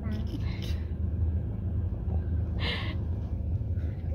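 Car engine running, a steady low rumble heard inside the cabin, with a short breathy burst a little past halfway.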